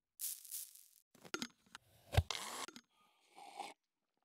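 Short handling sounds of a smoothie being made in a Nutribullet blender cup: a hiss near the start, a few light clicks, then a sharp thump about two seconds in followed by a brief rough noise.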